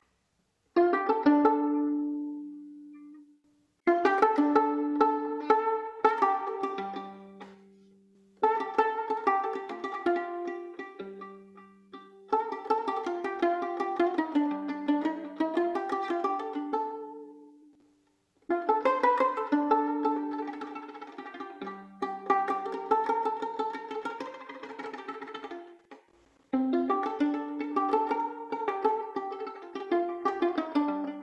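Violin plucked with the thumb in an oud-like pizzicato improvisation: phrases of quick repeated plucked notes, each dying away before the next phrase begins, about five phrases in all.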